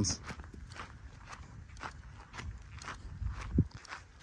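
Footsteps of a person walking on dry grass, about two steps a second, with a brief low thump a little before the end.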